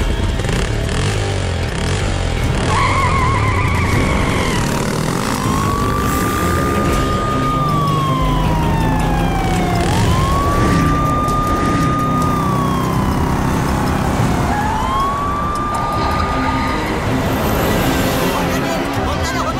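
Police siren: a short warbling yelp, then three long wails that each rise, hold and fall. Under it runs a steady motorcycle engine and traffic noise.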